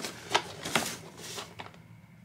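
Cardboard product boxes being handled and lifted out of a shipping box: a few light, sharp taps and clicks over soft packaging rustle.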